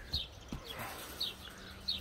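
Quiet farmyard background with a few short, high chirps of small birds, about four in two seconds, and a couple of soft low thumps in the first half second.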